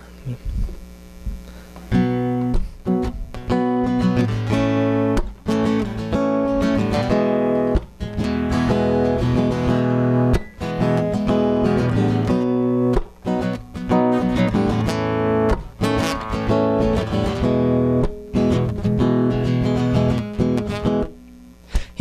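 Acoustic guitar playing a strummed chord intro. It starts about two seconds in and drops out briefly just before the end.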